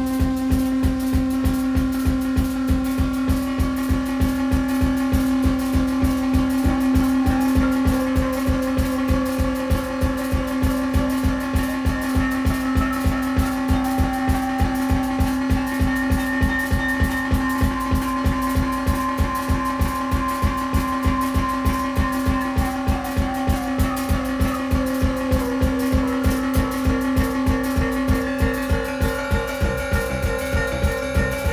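Live improvised electronic music: a synthesizer holds a steady drone over a fast, even low pulse, with higher tones slowly shifting above it.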